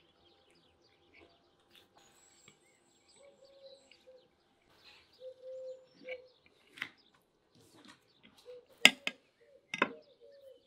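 A metal fork knocking sharply against a ceramic plate twice near the end, with quieter clicks of eating before it and faint bird chirps in the background.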